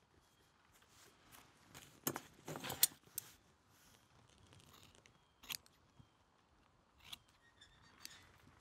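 Hands handling and pressing a glued deerskin leather wrap on a tail-fan handle: soft rustles with a few sharp clicks, a cluster of them about two to three seconds in the loudest.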